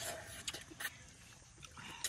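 A person eating noodles by hand from a pot: faint slurping and chewing, with a few short clicks.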